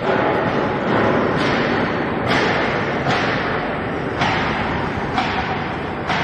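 Wire mesh belt shot blasting machine running on a test run: dense, steady mechanical noise from its blast wheel motors and conveyor, with abrupt surges in its hiss every second or so.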